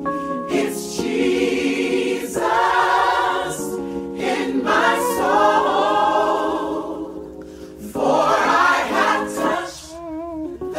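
Gospel choir singing a slow song, with a female lead voice holding long notes with vibrato over it, in phrases broken by short breaths.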